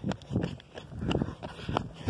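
Footsteps of a person walking over gravel, an even run of crunching steps about two to three a second.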